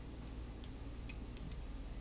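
Faint room tone with four light ticks, about two a second.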